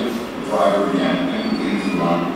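Speech only: a man talking in a recorded video played back over a lecture hall's loudspeakers.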